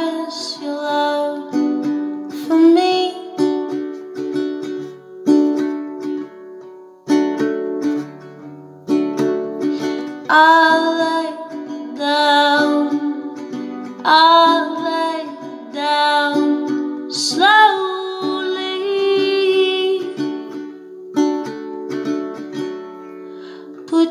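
A woman singing over a classical guitar, her voice sliding into long notes above chords that are re-struck every couple of seconds.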